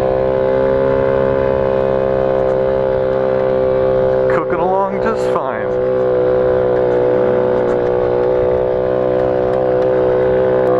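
Motorcycle engine running at a steady, unchanging throttle under the rider, with a low rumble throughout; a short burst of voice cuts in about halfway through.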